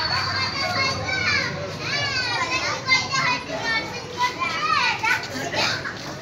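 Children calling and chattering in high voices, over the general chatter of a crowd.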